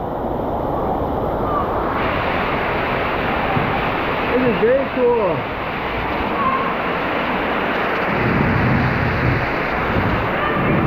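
Steady rushing and splashing of water from the waterfalls and water spouts along a lazy river tunnel, growing fuller and brighter about two seconds in. A brief high, rising-and-falling voice call comes about five seconds in.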